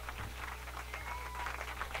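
Faint, scattered clapping and room noise from a small studio audience over a steady low hum, with a brief faint high tone about a second in.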